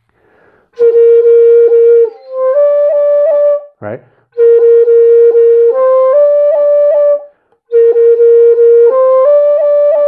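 Dongxiao, an end-blown Chinese bamboo flute in F, plays the same short phrase three times. Each time a held note is broken into repeated notes by quick finger re-articulations, then the tune steps up twice and repeats the top note.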